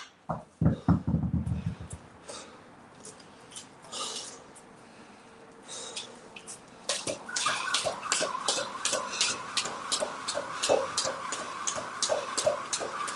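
A pair of 32 kg kettlebells set down on the floor with a heavy clanking thud about half a second in. After a quieter few seconds, a jump rope starts slapping the floor at a steady two to three ticks a second from about seven seconds in.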